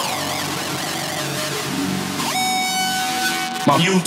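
Hardstyle DJ mix in a breakdown: the heavy kick drum drops out, leaving a wavering synth. About two seconds in, a rising sweep leads into held synth notes, and a vocal sample comes in near the end.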